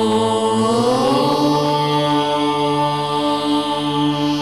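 Devotional ident music: a sustained chanted voice over a steady drone. The pitch glides up about a second in and then holds.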